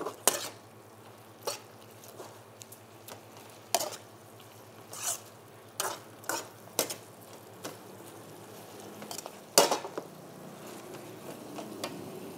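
A metal spatula scraping and clinking against a wok while a stir-fry is tossed, in irregular strokes, the loudest about two-thirds of the way through, over a faint sizzle.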